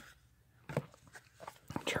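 Baseball cards being shuffled by hand: a few short, soft flicks and slides of card stock as cards are moved through the pack.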